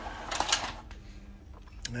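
Epson ink-tank inkjet printer starting a print job: its mechanism clicks a few times over a faint steady hum, with a sharper click near the end.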